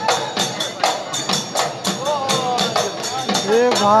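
Live Bihu folk music: dhol drums and small hand cymbals beating a fast, steady rhythm of about four strokes a second. A voice sings or calls over it in the second half, ending in a shouted "come on".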